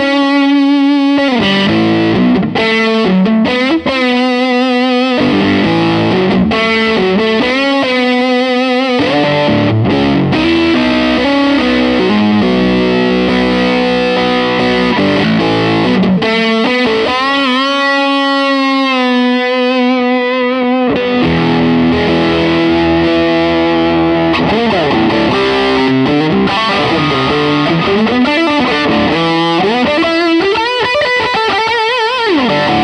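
Electric guitar played through a CMATMODS Brownie overdrive/distortion pedal (BSIAB circuit) with the gain wide open: a continuous heavily distorted lead line of long sustained notes, shaken with wide vibrato and bent.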